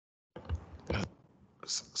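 Speech only: after a moment of dead silence, a man's soft, hushed breath and murmured sounds close to a meeting microphone, then clear speech begins near the end.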